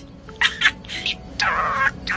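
Pet budgerigar chattering in fast, mimicked talk: short chirps about half a second in, then a longer scratchy burst of chatter near the end.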